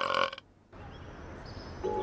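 A cartoon dog's loud, gurgling burp, ending abruptly within the first half second. Faint background follows, and soft held music notes begin near the end.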